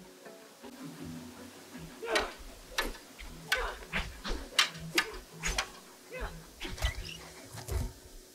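Soundtrack of a TV sparring scene: music under a string of sharp hits and short vocal efforts, with a heavier thud near the end as one fighter is knocked to the floor.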